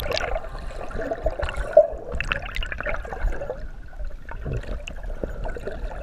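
Water gurgling and sloshing around an action camera held just under the surface, a muffled low rumble scattered with irregular bubbly clicks and pops.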